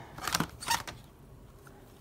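Plastic CD jewel cases clacking against each other as one is pulled out of a box of CDs, a few short clicks in the first second.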